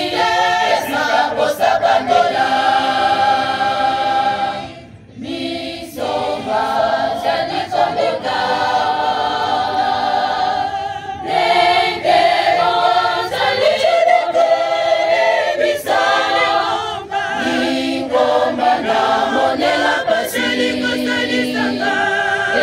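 Large choir of women's voices singing a cappella in harmony, holding long chords; the singing drops away briefly about five seconds in, then resumes.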